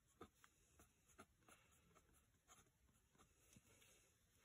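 Very faint scratching of a pencil on paper as short strokes are drawn and written, several brief scratches spread through the moment.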